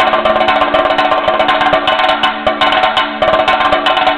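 Chenda, the Kerala cylindrical drum, played with sticks in a fast, dense stream of strokes, with brief dips between phrases.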